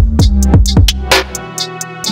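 Old-school hip hop instrumental beat: a steady pattern of drum hits over a deep held bass note that cuts out about one and a half seconds in, with sustained pitched tones above.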